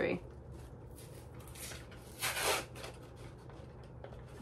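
Low steady room hum with two short rustles, a faint one about one and a half seconds in and a louder one just after two seconds: a lipstick's retail packaging being handled and opened.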